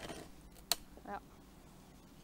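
Faint background hiss with a single sharp click a little before the middle, and no sawing.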